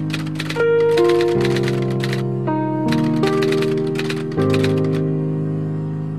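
Intro music: sustained chords that change every second or so, with bursts of rapid, typewriter-like clicking over them that die away a little past halfway.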